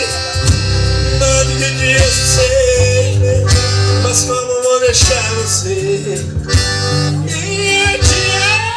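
Live forró band playing: an accordion carries the melody, holding one long note before moving on, over guitar, bass and drum kit.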